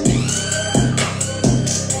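A hard hip-hop beat playing back: heavy kick and bass hits about every three-quarters of a second under quick, steady hi-hats and a melodic sample.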